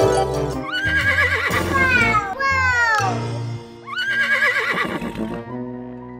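A horse whinny sound effect, heard twice: each a quavering high call that slides downward, over background music.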